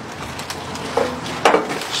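Three sharp knocks or bumps about half a second apart, the last two loudest.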